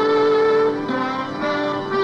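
Orchestral music bridge of slow, held string notes, the notes changing about once a second, marking the return from the commercial to the radio drama.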